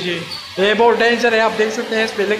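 A person's voice, loud and close, starting about half a second in after a brief gap and carrying on without a break.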